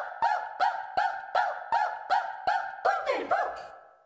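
Short pitched chirps repeat at about three a second, each opening with a click; near the end they slide down in pitch and fade away.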